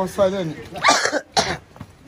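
A person's voice speaking briefly, then two short coughs, about a second and a second and a half in.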